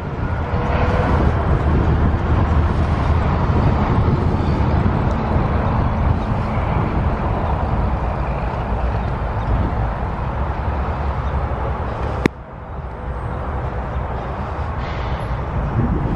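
Wind noise on the microphone and tyre noise from a bicycle riding along a paved trail, a steady low rumble. A sharp click comes about twelve seconds in, and after it the sound is quieter.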